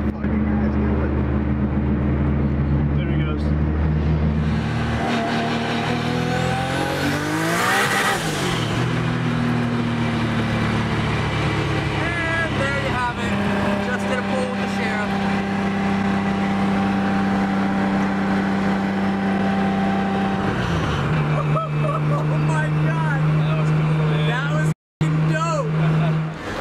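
Car engines running at speed on a street, heard from inside a following car: a steady engine drone, with an engine note that rises and then falls away with a rush of noise about six to eight seconds in. The drone holds steady again, then drops in pitch about twenty seconds in. Voices talk over it in places.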